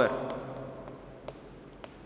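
Chalk writing on a chalkboard: a low scraping with a couple of sharp taps of the chalk against the board.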